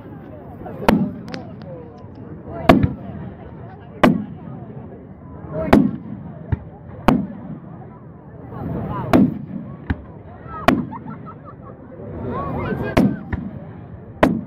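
Aerial firework shells bursting: about eight sharp bangs, one every second or two, some louder than others, with a few smaller pops between them.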